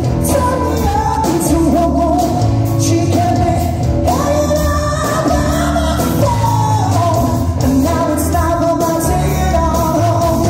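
Live rock band playing with a sung lead vocal: electric guitars, bass, drums and keyboards in a full mix with a steady beat.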